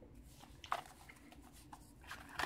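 Faint handling noise: a few light clicks and rustles of plastic packaging as hands move over a blister pack on a plastic bag.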